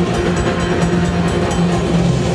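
A live doom and black metal band playing loud: heavily distorted guitars hold low droning chords over drums and cymbals.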